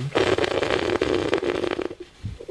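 Close, crackling rustle of fabric rubbing near the microphone, lasting nearly two seconds and stopping near the end.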